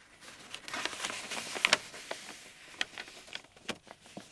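A paper envelope being torn open and handled: a run of tearing and crinkling, loudest in the first couple of seconds, with a few sharp snaps of paper.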